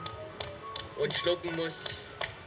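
Film soundtrack playing at a screening: music with a voice, and a run of short sharp taps over it.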